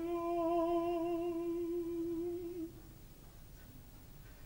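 A solo operatic tenor voice holds one long unaccompanied note with a slow vibrato, then stops a little under three seconds in, leaving faint stage room tone.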